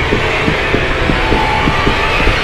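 Tense film-trailer sound design: a low rumbling drone under a fast, uneven pulse of about five beats a second, with a faint high held tone partway through.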